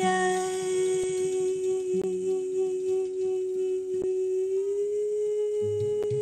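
A woman's voice holding one long sung note, sliding slightly higher near the end, with a few faint ticks. Low acoustic-guitar notes start again just before it ends.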